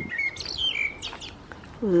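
Garden birds chirping: a short high note, then a few quick falling whistled notes about half a second in.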